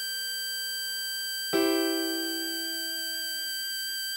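Synthesized melody notes played slowly: one note held, then a new note with a sharp start about a second and a half in, held and slowly fading.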